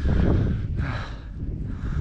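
Wind buffeting the microphone as a low, steady rumble, with a breathy sigh from a person for about the first second.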